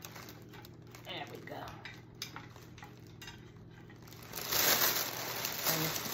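Hands handling a gift basket: soft clicks and rustles, then from about four seconds in a louder crinkling of the cellophane wrap around it.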